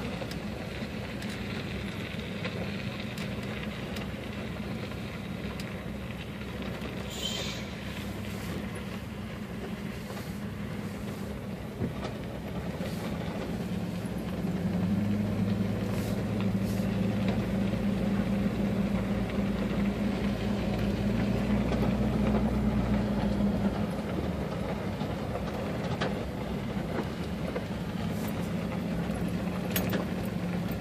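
A car's engine and tyres on a gravel road heard from inside the cabin: a steady low hum that grows louder for about ten seconds midway, with a few faint ticks.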